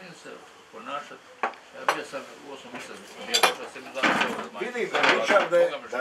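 Tableware clinking at a dinner table: a few sharp clinks of cutlery, plates or glasses, with men's voices talking over it in the second half.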